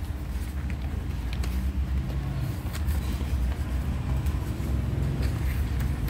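Steady low rumble of background noise with a few faint clicks.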